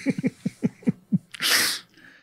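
A man laughing in quick, breathy pulses. About a second and a half in, the laughter ends in a short, loud hissing burst of breath.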